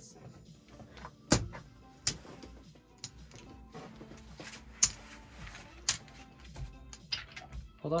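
Casino chips clacking on the felt as the dealer pays out winning bets, then gathers the cards and chips, in a few sharp separate clacks.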